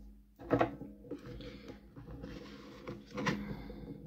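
Handling of handmade cardstock box layers: card sliding and rubbing, with a sharp knock about half a second in and another just after three seconds as the pieces are set down and fitted together.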